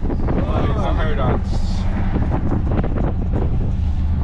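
Steady low engine and road rumble inside a moving car's cabin, with a few light knocks and brief voices or laughter in the first second or so.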